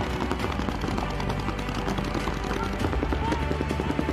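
Paintball markers firing in fast strings of shots, a dense rapid clatter, with steady background music underneath.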